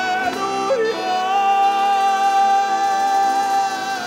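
A male voice singing a single long, high held note for about three seconds, with the folk ensemble accompanying, as the melody of a sung carol.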